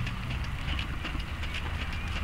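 Outdoor recording of a horse trotting in a sand arena: faint, irregular hoofbeats under a steady rumble of wind on the microphone.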